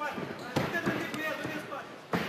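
Shouting voices from the corners and crowd around an MMA ring, with a few sharp thuds from the two fighters clinching against the ropes, about half a second apart early on.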